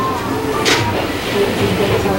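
Steady restaurant background noise with faint music, and a short breathy puff about two-thirds of a second in as ramen noodles held up on chopsticks are blown on to cool them.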